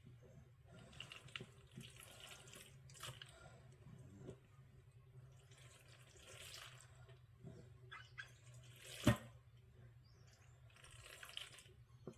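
Faint, irregular scraping and squelching of a wet tuna pasta bake mixture being scooped out of a glass mixing bowl into a baking pan with a spatula, with one sharp knock about nine seconds in.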